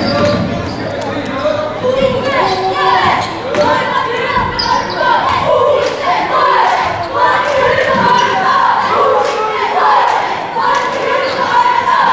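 Basketball dribbled on a hardwood gym floor during play, with spectators' voices and shouts throughout.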